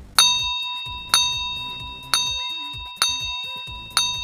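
Countdown timer sound effect: a bright bell-like ding struck about once a second, each ringing out and fading before the next, ticking off the last seconds of the answer time.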